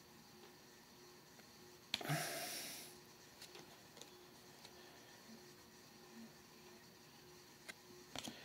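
Faint handling of trading cards, with a few tiny clicks as the cards are shuffled. About two seconds in, a short sharp breath through the nose that fades within a second.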